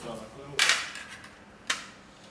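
Kitchen scissors cutting through cooked lamb's feet over a metal platter: two sharp snaps, a loud one about half a second in and a shorter one near the end.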